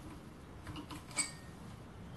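Faint handling of a steel spanner on the steel spindle mount, with a few soft clicks and one short, ringing metal clink about a second in.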